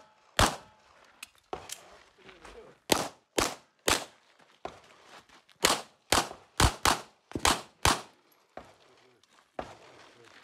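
Sig P320 X-Five pistol fired in quick strings, often two shots about half a second apart, with short gaps between strings while the shooter moves between positions. The firing stops about eight seconds in.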